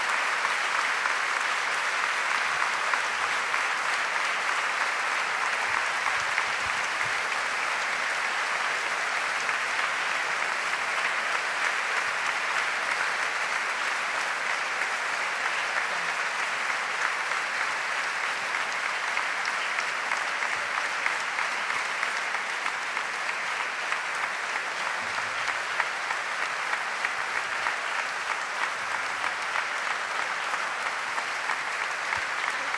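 Large audience applauding steadily, a long ovation of dense clapping that keeps up throughout, with a few sharper claps standing out near the end.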